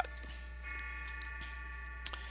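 A few faint computer keyboard key clicks over a steady low electrical hum.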